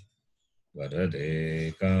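A man chanting a Sanskrit prayer verse in a steady recitation tone. It starts about three-quarters of a second in, after a brief silence, with a short breath-pause near the end.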